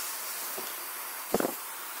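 A quick cluster of three small sharp taps a little over a second in, as the AMD Athlon 64 X2 processor, just pulled from its AM2 socket, is set down on the desk. A steady hiss runs underneath.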